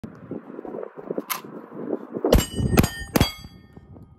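Gunshots hitting steel targets: a faint shot about a second in, then three loud shots about half a second apart. Each loud shot is followed by a ringing metallic ding.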